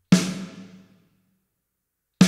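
A single snare drum hit heard fully wet through Valhalla VintageVerb's Chamber algorithm at 100% mix, with no dry signal, in 1980s colour with a 1.4 s decay. It has a sharp attack and a diffuse chamber tail that dies away in about a second.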